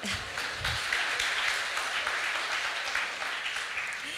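Audience applauding, swelling over the first second and easing off near the end.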